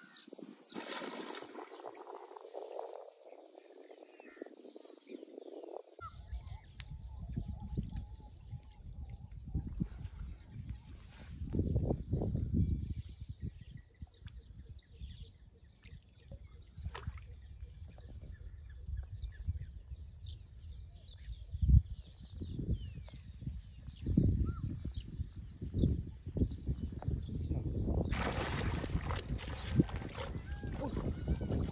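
Open-air river ambience: a gusty low rumble of wind on the microphone, swelling around 12 and 24 seconds in, with faint short bird chirps above it and a little water movement.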